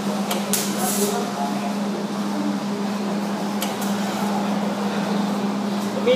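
Wire-feed (MIG) welding arc crackling steadily, with a few sharp spatter pops and a steady hum underneath.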